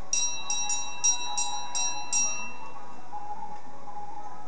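A small metal bell struck rapidly about seven times, around three a second, each strike ringing high and clear. The strikes stop about two and a half seconds in, leaving a faint steady tone in the background.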